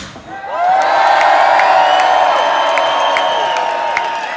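A rock band's music cuts off and, about half a second later, a large concert crowd starts cheering and shouting, with scattered claps.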